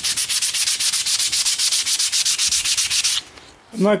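Coarse 80-grit sandpaper rubbed rapidly back and forth by hand along a wooden axe handle, about eight scratchy strokes a second, stopping abruptly a little after three seconds in.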